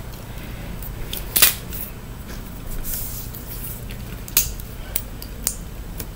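Toy packaging being handled as an L.O.L. Surprise ball is unwrapped: a few scattered crackles and clicks, the loudest about a second and a half in, over a low steady hum.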